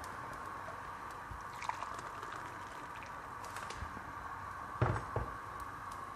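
Soft, steady hiss of rice and vegetables cooking in a pot on the stove, with light clicks and a louder knock about five seconds in.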